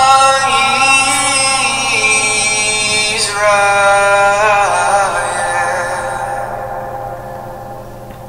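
A recorded song with a singing voice, long held notes that fade out over the last few seconds.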